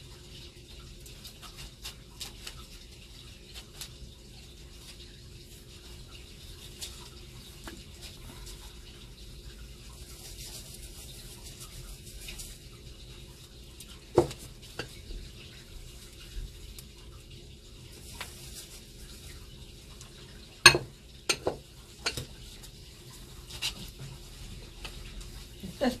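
Salt and cemetery soil being mixed and handled in bowls: scattered small scrapes and clinks of a utensil and dishes, over a faint steady hum. There is one louder knock about halfway through, and a few more a little later.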